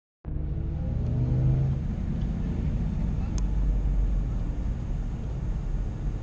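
Nissan GT-R's twin-turbo V6 running at low speed, heard as a steady low rumble inside the cabin, with the engine note rising briefly about a second in.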